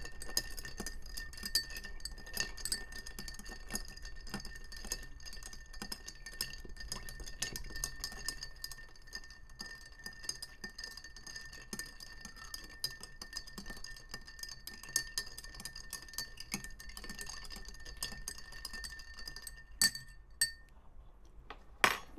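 Bar spoon stirring ice in a glass mixing glass: a continuous run of small clinks and ice rattling, with a faint steady ringing of the glass under it. The stirring stops about two seconds before the end, followed by a couple of sharper clinks.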